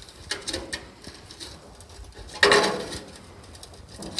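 Screwdriver levering under a rusted steel floor panel of a Leyland Moke: light metal scrapes and clicks, then one louder scrape or creak about two and a half seconds in. The panel does not pop free because a spot weld has not yet been fully drilled through.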